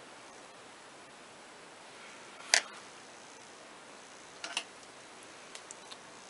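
Makeup items being handled: one sharp click about two and a half seconds in, a softer double click later and a few faint ticks near the end, over a steady low hiss.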